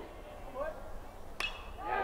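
A single sharp crack of a metal college baseball bat striking a pitched ball about one and a half seconds in, hit as a line drive.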